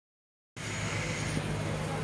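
Silent for about the first half second, then a steady wash of street traffic noise with a low hum.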